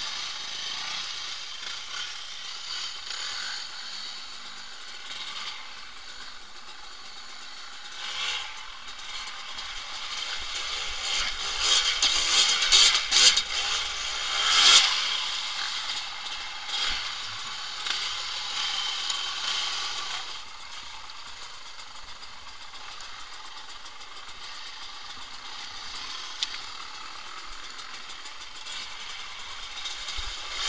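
Off-road trail motorcycle running as it rides over a rough, wet stony track, with rattling and clattering from the ride. The engine grows louder and revs up and down about eight to fifteen seconds in, then settles back to a steadier run.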